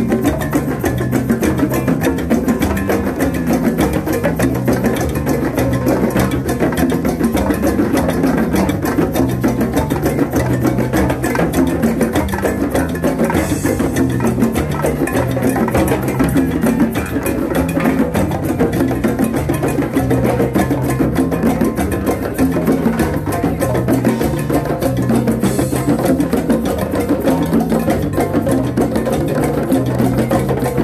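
Drum circle playing a fast, steady groove: many hand drums (djembes and congas) struck together with timbales on top and an electric bass line moving between low notes underneath.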